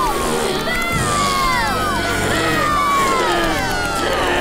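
A crowd of cartoon children shouting over one another in many overlapping, falling calls, heckling an unwelcome performer.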